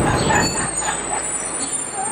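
City street traffic noise, with a low vehicle rumble that fades about one and a half seconds in.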